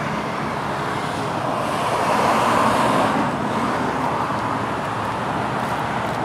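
Road traffic noise from the street beside the park: a car passing, its tyre noise swelling about two seconds in and easing off again.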